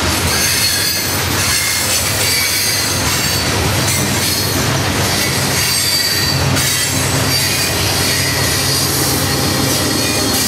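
Hopper cars of a freight train rolling past on the track, with squealing wheels and clacking over the rail joints. From about four seconds in, a steady low engine drone builds as a Union Pacific diesel locomotive at the rear of the train draws near.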